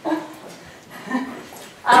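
A canine, a wolf or pet dog in the room, whining faintly in a few short whimpers.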